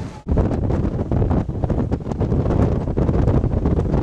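Strong wind buffeting the camera microphone on an open ship's deck, a loud, gusty rumble. It drops out for a moment just after the start, then comes back louder.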